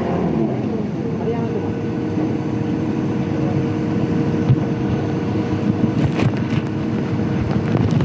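Aircraft running on the apron: a steady engine noise with a steady hum under it.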